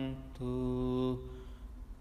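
A man's voice chanting a Pali Buddhist paritta on one steady held note, which ends just over a second in, followed by a short pause for breath.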